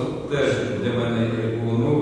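A man talking, drawing out one sound at a steady pitch for over a second.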